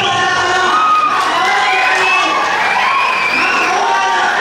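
A woman speaking loudly through a microphone and PA, over the cheering of a crowd in a hall.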